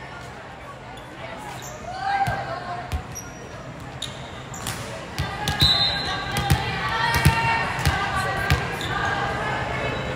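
Volleyball bounced repeatedly on a hardwood gym floor, a string of bounces under a second apart in the second half, in a large, echoing gym with players' and spectators' voices.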